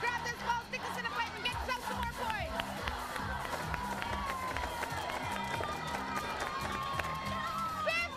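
Game-show music with a repeating bass line, under crowd noise of an audience shouting and cheering.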